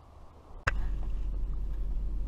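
Faint outdoor background, then a click about two-thirds of a second in as a steady low rumble starts: a pickup truck's engine idling, heard from inside the cab.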